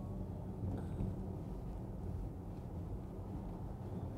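Low, steady road and tyre noise heard inside the cabin of a moving Porsche Taycan, with a faint hum underneath. It is an electric car, so there is no engine sound.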